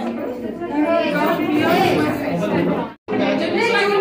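Crowd chatter: many voices talking over one another in a large, crowded room. The sound cuts out abruptly for a split second about three seconds in.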